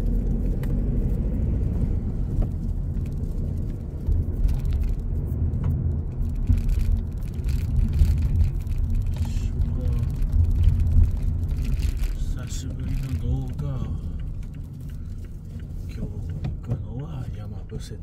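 Car driving, heard from inside the cabin: a steady low rumble of engine and tyres on the road, easing off somewhat in the last few seconds.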